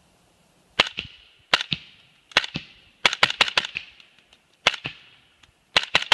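Suppressed 300 AAC Blackout AR rifle with a 12.5-inch barrel and a SilencerCo Saker 7.62 suppressor, firing subsonic 187-grain rounds: about a dozen short, sharp shots, each with a brief ringing tail. Spaced single shots come first, then a quick string of about five shots about three seconds in, and more shots near the end.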